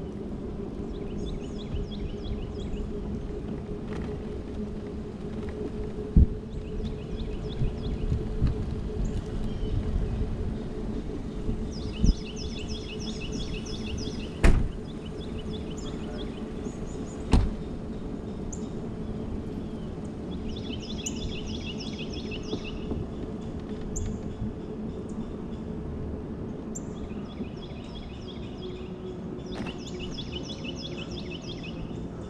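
Electric mobility scooter's drive motor humming steadily as it rolls along a paved street, with a few sharp knocks as it jolts over the pavement. Birds chirp in short runs of rapid high notes every few seconds.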